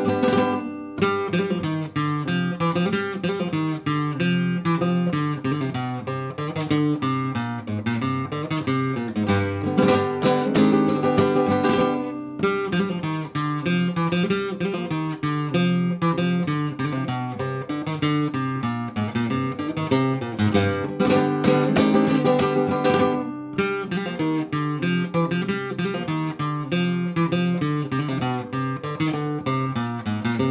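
Solo nylon-string flamenco guitar playing a sevillanas at normal speed in its steady triple rhythm, mixing sharp strummed chords with single-note melody. The sound stops dead for an instant three times: about a second in, at about twelve seconds and at about twenty-three seconds.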